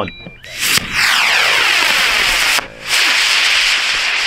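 High-power rocket motor firing at liftoff: a loud rushing hiss that starts about half a second in, with a sweeping, falling tone as the rocket climbs away. It drops out briefly a little before three seconds in, then starts again. A flyer remarks just afterwards that the booster CATO'd (its motor failed) but the flight still worked out.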